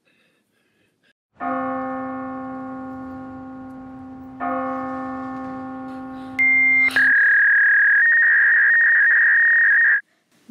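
A deep bell tolls twice, each stroke ringing out and slowly fading, and is followed by a loud, piercing, steady high tone that holds and then cuts off suddenly.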